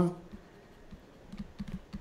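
Faint, scattered light taps and clicks of a stylus writing on a pen tablet, more of them in the second half.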